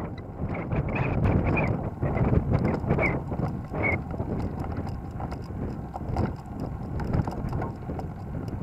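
Wind buffeting the microphone of a moving bicycle, a steady low rumble, with a dense patter of small clicks and rattles as the tyres roll over paving stones.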